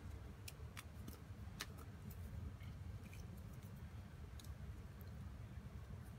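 A handful of faint, sharp clicks from hands working garden twine and a small cutting tool, most of them in the first two seconds and one more later, over a low steady background rumble.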